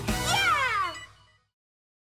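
The end of a children's cartoon song: a cheerful sung "Yay! Yeah!" in high voices that slide down in pitch over the music. It fades out about a second and a half in.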